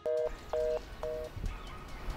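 Mobile phone call-ended tone: three short two-tone beeps, each about a quarter second long and half a second apart, signalling that the call has been disconnected.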